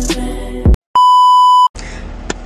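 Music with a beat cuts off, and after a brief gap a loud, steady electronic beep at a single pitch sounds for under a second. A low, quiet background hum follows near the end.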